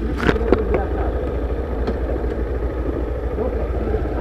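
Honda motorcycle engine idling steadily with the bike standing, a few sharp clicks in the first half second.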